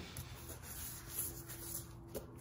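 Wet sandpaper rubbed by hand over the fiberglass underside of a C3 Corvette hood, a faint scratchy rubbing.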